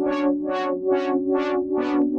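A held synthesizer chord run through an LFO-driven filter, its cutoff sweeping open and shut about three times a second, so the sound pulses from dull to bright and back in a steady wah-like rhythm.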